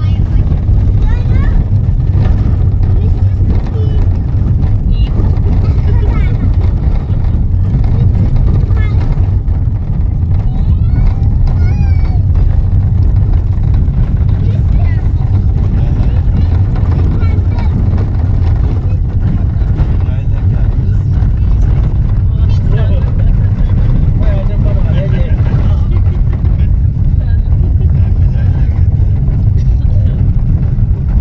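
Steady low rumble of a vehicle driving, with faint voices talking over it.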